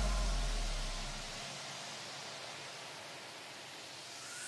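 Gap between two electronic backing tracks: a deep bass note dies away over the first second and a half under a hiss of white noise, which thins out and then swells again near the end as a lead-in to the next track.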